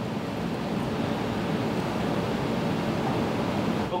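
Steady, even hiss of room background noise, with no distinct events.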